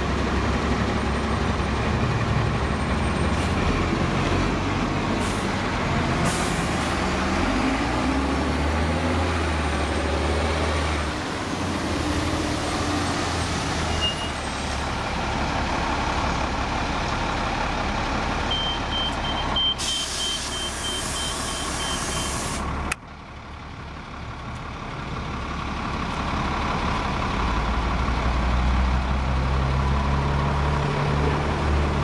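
City transit bus diesel engines running as buses pull in and out of stops. About twenty seconds in, a repeated high beep sounds, then a loud hiss of released air lasting a few seconds.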